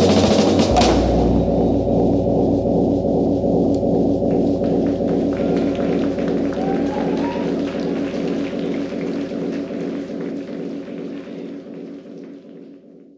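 Live band ending a song: a final hit with a deep drum thump about a second in, then a held chord that rings on with a regular wavering pulse and slowly fades away.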